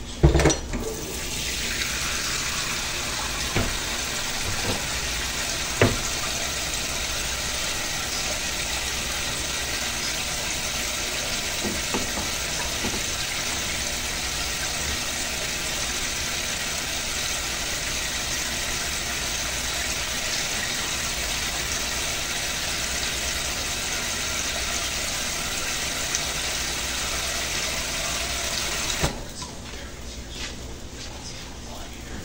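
Oil sizzling steadily around ground pork and potato omelette patties frying in a nonstick pan. A loud knock comes at the very start, and a few lighter knocks follow within the first six seconds.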